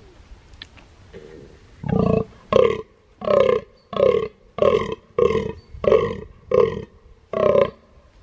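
Fallow deer buck giving its rutting call, the groan: starting about two seconds in, a regular run of about nine short, deep calls, roughly one and a half a second.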